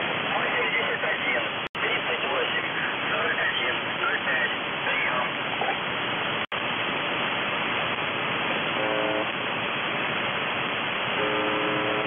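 Shortwave radio reception of UVB-76, "The Buzzer", on 4625 kHz: a steady rush of static with faint warbling interference, broken by two brief dropouts. Near the end the station's buzz tone rises out of the noise twice, first for about half a second and then for about a second.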